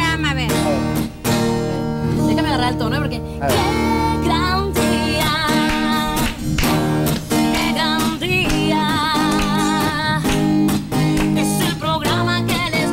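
A woman singing, accompanying herself on a strummed acoustic guitar, her voice wavering with vibrato on held notes.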